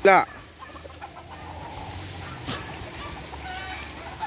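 Roosters clucking and calling faintly in the background, with a few short pitched calls in the second half. A brief loud voice sounds at the very start.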